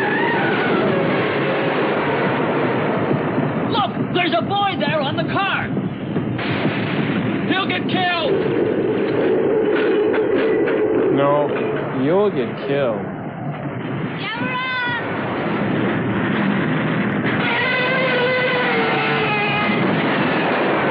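Monster-film soundtrack: a dense, continuous rumble of fire and explosions, with several wavering high cries rising and falling over it.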